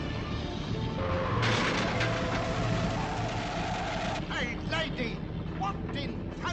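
Cartoon soundtrack of a car and a truck driving, with a steady engine rumble under orchestral music. A loud noisy rush runs for about three seconds from about a second and a half in, and short sliding tones follow near the end.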